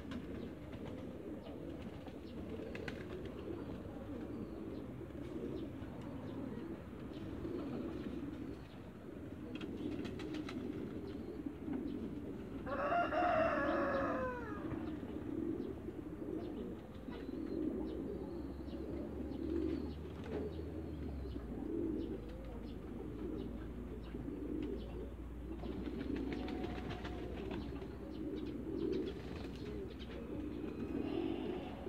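Pigeons cooing, a low, wavering cooing that goes on throughout. About thirteen seconds in comes one louder bird call, about a second and a half long, that falls in pitch.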